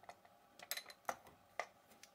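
A few faint, short clicks and taps of hard 3D-printed plastic parts being handled: the drive wheel fitted onto the servo horn.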